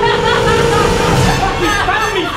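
Several people yelling and shrieking without clear words, building towards the end, over a held musical tone that fades out early on.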